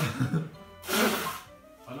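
Stifled laughter: two loud, breathy bursts of laughing snorted out through hands held over the mouth, one at the start and one about a second in. Faint music plays underneath.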